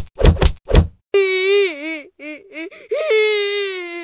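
Four quick cartoon whack sound effects in the first second, then the banana cat meme's crying sound: a high, wavering cartoon wail that breaks into short sobs and swells into a long held cry near the end.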